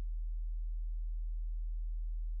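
A steady low hum: a single unchanging tone at about 50 Hz with faint overtones, running beneath the narration's pause.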